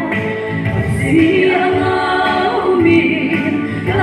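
A woman singing a gospel praise song into a handheld microphone, holding long notes.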